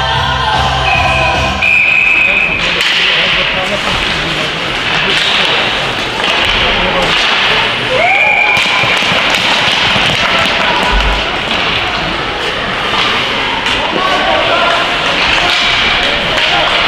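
Youth ice hockey play in an echoing rink: arena music cuts off about two seconds in, giving way to a steady mix of children's and spectators' shouts with knocks of sticks and puck on the ice and boards. A short high whistle blast sounds about two seconds in and again about eight seconds in.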